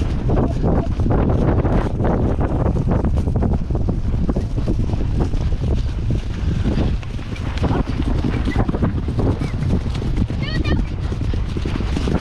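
Wind buffeting the microphone of a camera riding on a galloping pony, over the pony's rapid hoofbeats on grass turf. A brief high chirping call is heard about ten seconds in.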